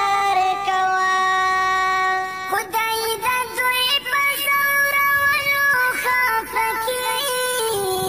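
Background music: a single sung melody with long held notes that glide from one pitch to the next.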